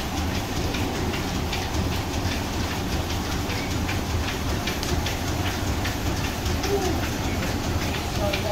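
Blacksmith's forge fire burning hard, a steady low rumble with frequent sharp crackles and pops.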